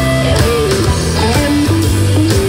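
Blues-rock song in an instrumental break: a lead electric guitar plays a descending phrase with bent notes over bass and drums.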